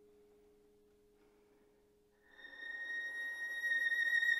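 A soft low chord fades away almost to silence. About two seconds in, the violin enters on a single high held note that swells steadily louder.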